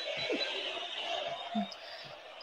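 A quiet gap in a talk broadcast: a faint steady hiss with a few soft, indistinct voice sounds.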